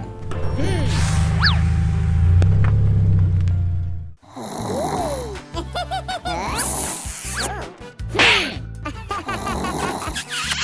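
Cartoon sound effects over music. A loud, steady low rumble fills the first four seconds and stops abruptly. Then come squeaky, sliding cartoon voice sounds and comic snoring.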